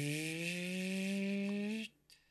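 A man's voice drawing out a long wordless hesitation sound, its pitch rising slowly for about two seconds before it stops near the end.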